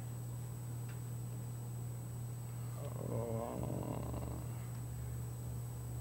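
Steady low hum with a faint steady high whine, and a man's long, drawn-out hesitant "uhh" about three seconds in.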